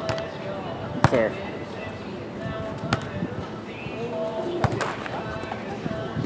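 A volleyball struck by players' hands and forearms during a sand volleyball rally: four sharp smacks one to two seconds apart, starting with the serve, the loudest about a second in.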